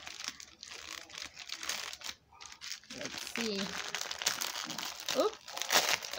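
Newspaper gift wrapping being torn open and crumpled by hand, a run of crackling rustles and rips with a brief lull about two seconds in.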